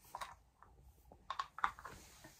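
Faint rustling of bedding with a few short soft clicks, most of them bunched together in the second half, as a baby crawls across blankets on a bed.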